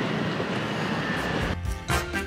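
Steady street noise. About one and a half seconds in, it gives way to upbeat swing music.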